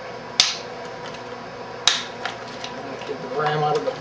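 Two sharp plastic clicks about a second and a half apart as a RAM kit's plastic retail packaging is picked up and handled.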